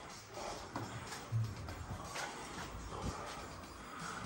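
Faint background music, with a few light clicks.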